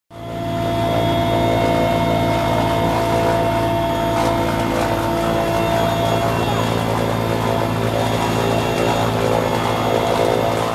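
Mi-8 helicopter's twin turboshaft engines and main rotor heard from inside the cabin with the side door open. It is a loud, steady drone with a stack of steady hum tones, fading in at the start.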